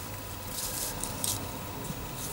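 Soft rustling of a small lace-and-tulle bunting banner being handled and shifted along by hand, a few brief rustles over a faint steady hum.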